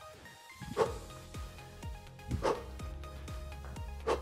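Three short voiced grunts of effort, about a second and a half apart, from a man bounding side to side in skater hops, over steady background music.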